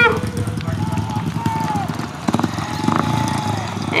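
Speedway solo bikes running at low speed on a victory lap: a steady, rapid engine pulsing, with two faint tones that rise and fall briefly over it.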